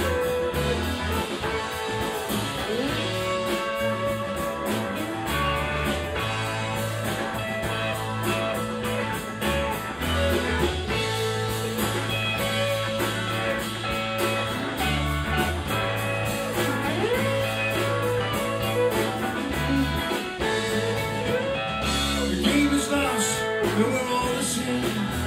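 Live rock band playing an instrumental passage: electric guitars over bass and drums, with a lead guitar bending notes.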